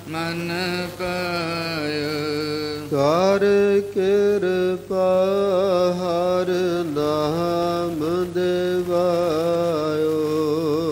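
Male voices singing a Sikh shabad (Gurbani kirtan) in long held notes that step up and down, over a steady low hum.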